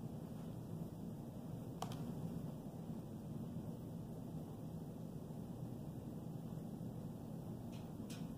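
Quiet room tone with a steady low hum, broken by a sharp click about two seconds in and another near the end: computer mouse clicks.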